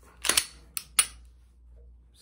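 Metal-on-metal clicks and snaps of a Glock 19 pistol's slide being worked by hand: a quick pair of sharp clicks just after the start, then two more single clicks about a second in.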